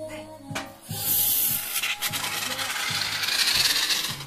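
Aerosol can of expanding foam hissing as foam is sprayed into the gap between a door frame and the wall. A steady hiss starts about a second in.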